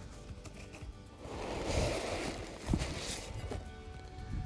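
Soft background music, with packing paper and cardboard rustling in the middle as a ceramic toilet-bowl liner is lifted out of its box, and a single knock just after.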